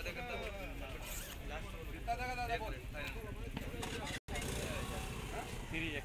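People talking, the voices continuing through the whole stretch, with a split-second total drop-out of sound about four seconds in.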